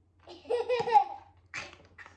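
Children laughing: a loud burst of child laughter starting about a quarter second in, then a shorter burst about a second and a half in.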